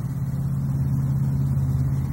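A steady low engine hum that slowly grows louder.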